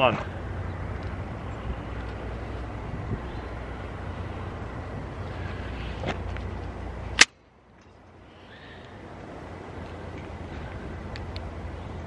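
An arrow slingshot released once about seven seconds in: a single sharp snap of the rubber bands launching the arrow. Before it there is a steady low rumble; after it the background drops away suddenly and slowly comes back.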